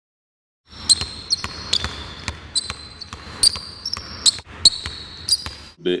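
After a brief silence, a basketball bounces irregularly on a hardwood gym floor while sneakers give short, high squeaks, with some echo after the bounces.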